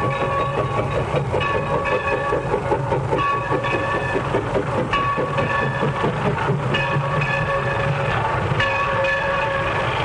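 Steam locomotive pulling a passenger train slowly into a station, running with a steady rumble and a fast rhythmic clatter. Short pitched tones sound over it, breaking off and coming back every second or so.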